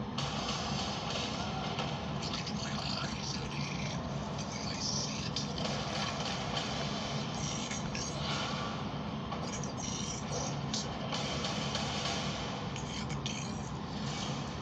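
Soundtrack played through a screen's speaker and picked up by a phone held to it: music with indistinct voices under a steady hiss.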